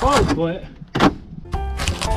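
Utility knife stabbing and ripping through corrugated cardboard, with one sharp tearing burst about a second in. A short vocal sound comes just before it, and music comes in near the end.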